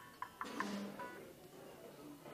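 A few quiet, short instrument notes played by the worship band in the first second, with one lower note held briefly just after.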